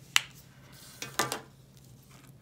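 A felt-tip marker being capped with one sharp click, then a second, softer knock about a second in as it is laid down among other markers on the table.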